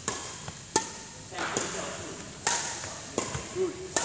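Four sharp, echoing impacts spaced a second or two apart: badminton racket strikes on shuttlecocks and footwork on a wooden court floor during a coached drill. A short spoken 'good' comes near the end.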